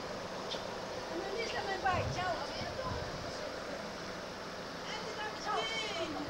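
People talking on the street, a few short phrases of speech over a steady background hiss.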